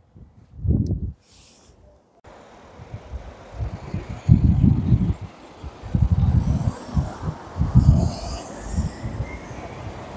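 Wind buffeting the microphone in irregular low gusts, starting about two seconds in after a brief quiet spell with one soft thump. A car drives past on the roundabout.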